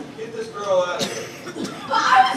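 Voices of performers talking on stage, too indistinct to make out, with a brief sharp sound about a second in.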